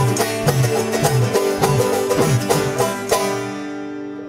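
Live banjo and acoustic guitar music in a bouncy bluegrass style, with a low bass note about twice a second. The playing stops on a final chord about three seconds in, and the chord rings and fades away.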